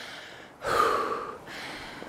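A person breathing hard and out of breath: one loud gasping breath about half a second in, then a quieter breath. The breathlessness comes from walking uphill under a heavy load.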